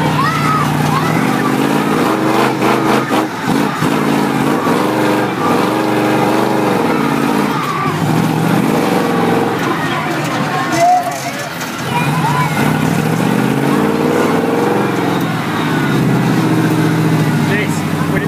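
Grave Digger monster ride truck's engine running as it drives, heard from inside the cab, its pitch rising and falling several times as the throttle opens and closes. It drops off briefly about eleven seconds in, then climbs again.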